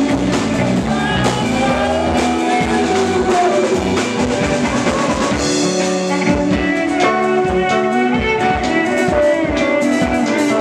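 Live folk-rock band playing with no words sung: electric guitar, electric bass and drum kit, with a bowed electric cello carrying a slow, gliding melody line.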